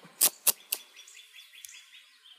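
Duct tape pulled off the roll: two sharp rips about a quarter second apart near the start, then a fainter, high, steady crackle.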